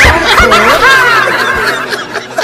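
A man laughing loudly in one long run of laughter that trails off near the end.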